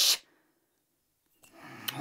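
The hissing end of a cartoon sneeze, cut off sharply, then near silence. A faint rustle and one small click come near the end.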